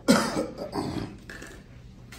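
A person coughing: one loud cough right at the start, then a few weaker coughs over about a second.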